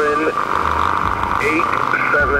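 A voice coming over HF radio, thin and narrow with steady static under it, reading out an aircraft call sign as the Gander oceanic controller answers a position call.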